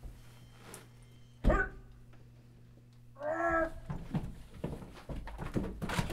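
A sudden short loud sound about one and a half seconds in, then a brief wordless vocal sound from a person about three seconds in, over a steady low room hum.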